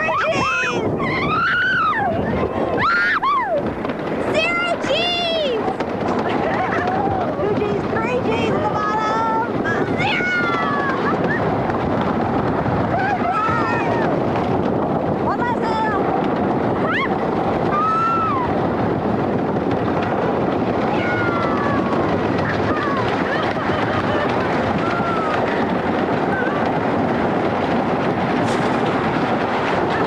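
Roller coaster car rumbling and rattling along a wooden track at speed, with riders screaming and whooping over it. The screams are thickest in the first few seconds and come more sparsely after that.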